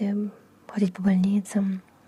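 Speech: a voice talking in short phrases, with a brief pause about half a second in.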